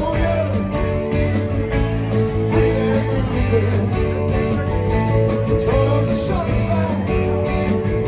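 Live rock band playing at full volume: electric guitars over bass and drums.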